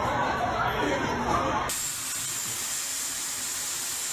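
A hot-air hair styler blowing: a steady hiss of air with a faint high whine, cutting in suddenly a little under two seconds in. Before it, voices and chatter echo in a large store.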